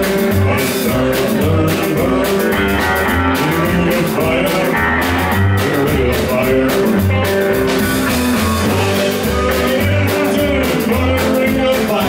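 Live trio music: electric guitar over upright double bass and drums, with a steady beat and the bass plucking a pulsing low line.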